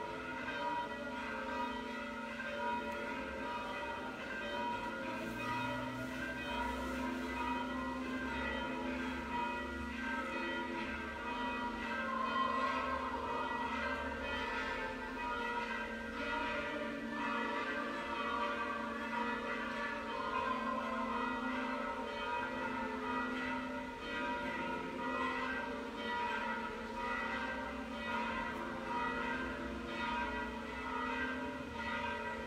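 Orthodox church bells ringing on and on, many tones overlapping and sounding together.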